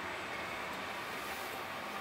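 Steady cabin noise of an electric Jaguar I-Pace rolling along a city street: tyre and road noise with no engine sound.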